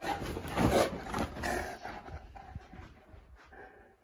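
A Boerboel making a rough, drawn-out growling vocalization. It starts suddenly, is loudest in the first second and a half, and fades away over the next two seconds.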